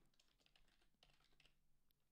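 Faint typing on a computer keyboard: a few scattered soft keystrokes against near silence.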